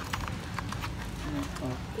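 Scattered light clicks and taps of small plastic phone accessories being handled and lifted out of a cardboard box tray.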